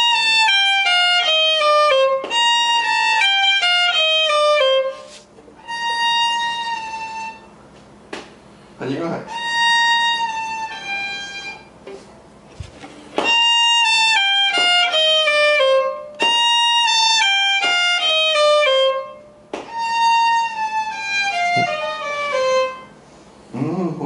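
A violin playing the same short descending slurred phrase again and again, seven times, each run two to three seconds long with short gaps between. It is a slow bowing exercise for hearing unwanted accents at the bow changes, where the bow speeds up on the note before each change.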